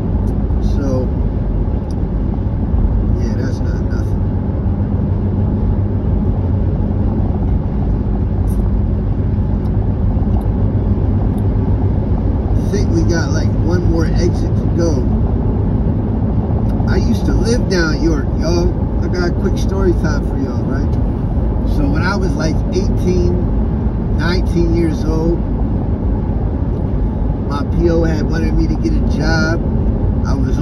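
Steady road and engine noise inside a car cruising on a highway. A voice talks over it through much of the second half.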